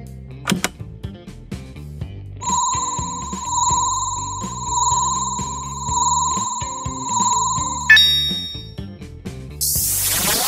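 Background music with a cartoon sound effect laid over it: a high electronic ringing tone that pulses about once a second for around five seconds while the picture reels spin, then cuts off with a sharp bright ding. A whoosh starts near the end.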